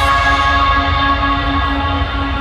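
Loud live music over a concert sound system: a sustained, bell-like chord held over a steady bass, with the treble pulled back.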